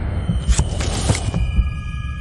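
Logo-intro sound design: a deep throbbing hum with a few sharp hits about half a second to a second in, then high ringing tones joining.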